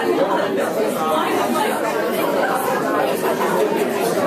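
Chatter of many people talking at once, overlapping conversations filling a large room.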